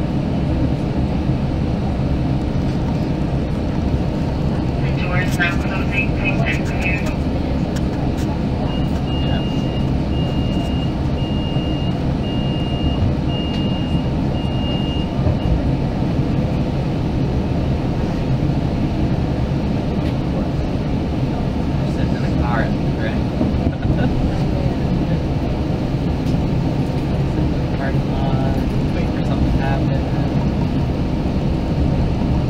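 Steady low rumble inside a West Coast Express commuter train car, with faint voices. About nine seconds in comes a run of about seven evenly spaced high electronic beeps lasting some six seconds.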